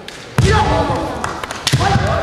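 Kendo fighters' kiai shouts, breaking out suddenly about half a second in and again near the end, with heavy thuds of feet stamping on a wooden gym floor and sharp clacks as they close in to attack.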